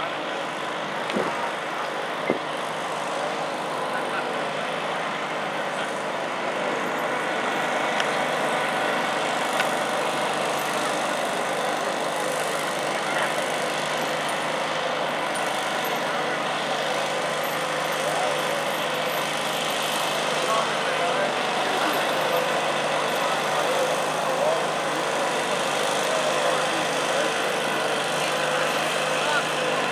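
Small engines idling steadily under a background of crowd chatter.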